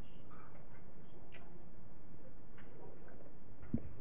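Steady room tone of a council chamber picked up through the meeting's microphones, with a few faint, irregular clicks and taps and a soft knock just before the end.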